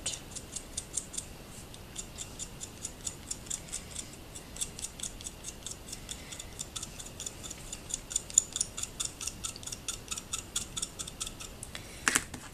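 Chalk being scraped with a pointed tool, shaving dust onto a cookie: light, quick scratching strokes, several a second, in an even rhythm.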